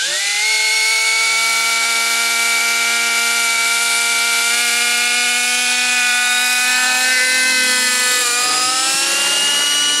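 Align T-Rex 600 nitro RC helicopter's glow engine and rotor spooling up quickly right at the start, then holding a steady high whine as it lifts off. About eight and a half seconds in, the pitch rises again as it climbs away.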